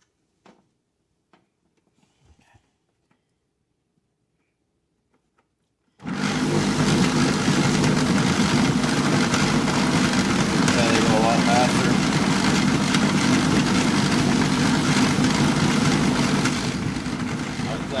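A few faint clicks in near silence, then about six seconds in a car buffer switches on abruptly and runs steadily and loudly inside a plastic 5-gallon bucket. It is spinning two pool balls around on its pad against the towel-lined wall.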